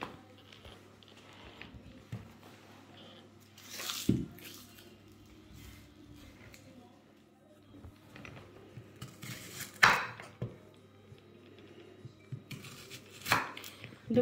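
A knife cutting peeled onions on a wooden cutting board: three sharp knocks of the blade on the board, about four, ten and thirteen seconds in, with fainter cutting and handling clicks between.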